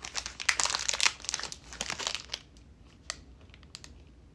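Plastic energy-bar wrapper crinkling as it is handled, dense for the first two seconds, then a few separate crackles.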